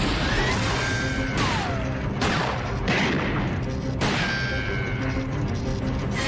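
Several sharp gunshots, spread over the first four seconds, over tense background music.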